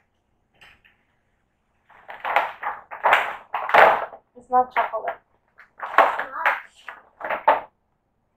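Paper gift bag rustling and crinkling in bursts as a boxed toy is pulled out of it, starting about two seconds in. A child's voice is heard briefly about halfway through.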